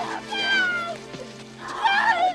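A woman's high-pitched cries of distress as she is dragged and struggles, two cries with the first falling in pitch, over film-score music with steady low sustained notes.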